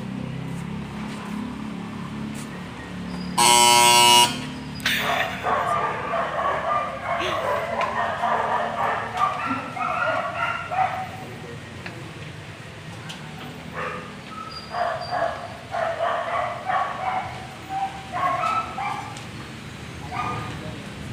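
A dog barking in repeated bouts, mixed with people's voices. A loud, steady, high tone sounds for about a second just before the barking starts.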